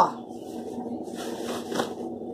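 Cotton tricoline fabric rustling and swishing as a long sewn fabric tube is pulled through itself by hand to turn it right side out, with a louder rustle about one and a half seconds in.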